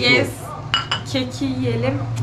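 A porcelain coffee cup clinks against its saucer a little under a second in: one short, bright ring.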